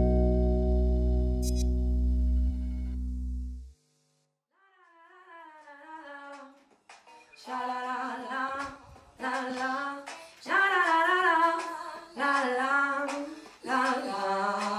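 A guitar-and-bass chord ends the song, ringing and then cutting off just under two seconds in. After about a second of silence, a lone voice sings a wordless melody unaccompanied, in short phrases with vibrato, growing louder after the first few seconds.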